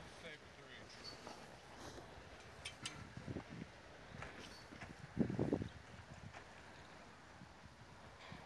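Quiet outdoor background with faint, indistinct voices and a few light clicks and knocks. A short muffled burst about five seconds in is the loudest sound.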